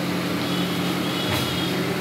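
Steady low hum under an even hiss, from oil deep-frying in a blackened iron kadai on a gas burner.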